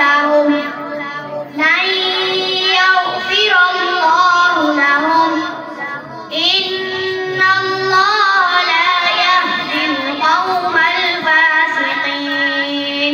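A boy reciting the Quran from memory in a melodic, chanted style into a microphone, with long held notes and short pauses for breath about one and a half and six seconds in.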